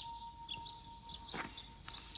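Faint, sparse bird chirps, with two soft knocks in the second half.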